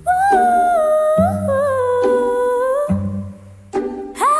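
Wordless, multi-tracked female vocal harmonies, all sung by one singer: two or three held lines gliding between notes over a backing track with low bass notes. The voices drop out briefly about three seconds in and come back just before the end.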